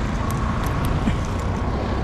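Steady roadside traffic noise, a low rumble of passing cars.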